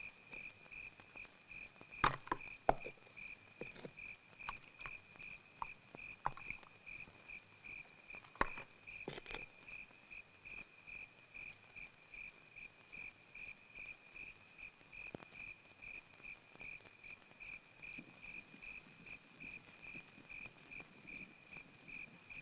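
Crickets chirping in a steady, even pulse, with a few soft knocks scattered through, the loudest about two seconds in.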